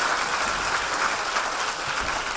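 Audience applauding, a steady sustained clapping.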